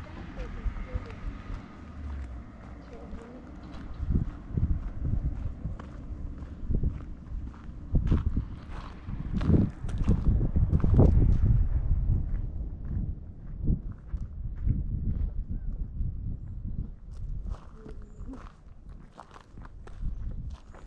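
Footsteps of a walker on a dry dirt mountain path, an irregular series of crunching steps, over an uneven low rumble that swells loudest around the middle.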